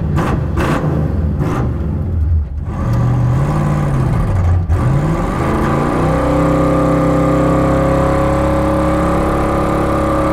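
Gremlin's 500-cubic-inch Cadillac V8 revved in uneven blips and swoops, then climbing about five seconds in and held at a steady high rpm while the rear tyre spins in a burnout.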